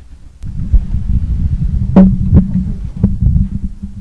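Handling noise from a handheld microphone as its holder kneels down with it: a loud low rumbling and rubbing, with several knocks, the loudest about two seconds in.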